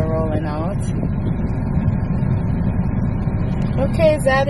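Steady low rumble inside a Hyundai vehicle's cabin: the engine and running noise heard from the driver's seat.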